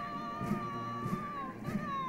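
Military marching band music: a high wind-instrument note held for about a second and a half, then sliding down near the end, over a steady bass-drum beat about twice a second.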